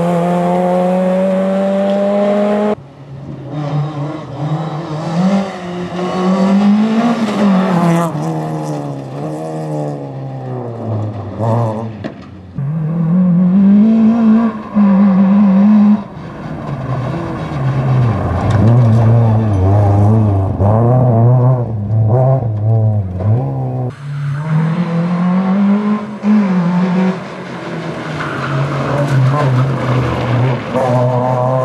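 Škoda Favorit rally car's four-cylinder engine driven hard, its note rising under acceleration and dropping at each gear change, over several edited passes with sudden cuts between them.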